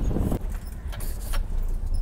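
Safari 4x4 driving along a rutted dirt track: a steady low rumble of engine and road, with a few light clicks and rattles from the vehicle.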